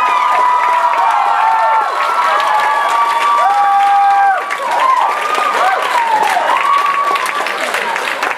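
Theatre audience whooping and cheering: many voices in long, overlapping calls, with applause that grows denser toward the end.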